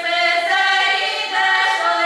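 Children's folk vocal ensemble of girls singing a Russian folk song a cappella, several voices together holding long notes, with the melody shifting pitch twice.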